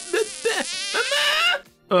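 A voice drawing out a warbling, wavering vocal sound with quick wobbles in pitch, a comic dubbed kiss; it breaks off about a second and a half in and speech starts right at the end.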